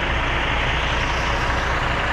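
Semi-truck diesel engine running steadily close by, a constant low hum under a broad even rumble.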